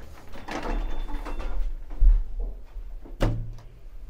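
Lift doors sliding shut, then a low thump about halfway through as the lift car gets under way.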